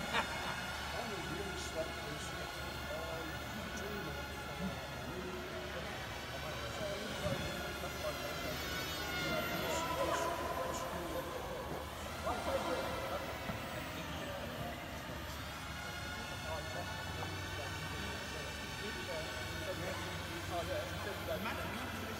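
Small electric RC model airplanes flying laps in a large hall, their motors and propellers whining steadily. The pitch drops about ten seconds in and climbs again a couple of seconds later as the throttle changes. Indistinct voices echo in the background.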